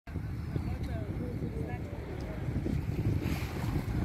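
Wind buffeting the microphone: a steady, gusty low rumble.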